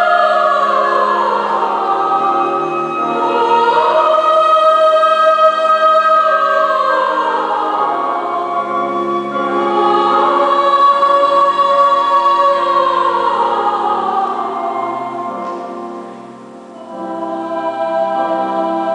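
Mixed choir singing held chords, with voices sliding in pitch between them several times. The sound dips briefly near the end and then swells again.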